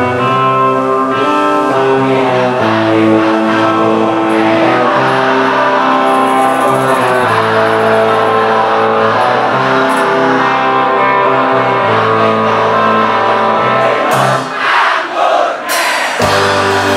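Live band playing a song through a PA: electric and acoustic guitars with bass and singing. The bass drops out for the last two seconds or so.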